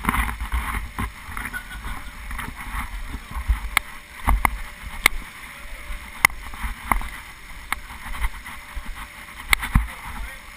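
Bouncing and moving on the vinyl floor of an inflatable bouncy castle, heard through a helmet-mounted camera, with a low rumble throughout and sharp clicks and knocks about every second or so.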